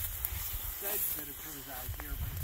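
Low rumble of wind on the microphone in an open field, under a faint steady hiss, with short quiet bits of voice about a second in and near the end.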